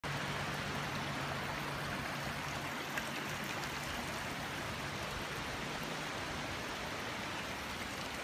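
Steady rush of running water, with a faint low hum underneath that stops about six seconds in.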